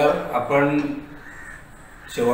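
A man speaking a few words in the first second.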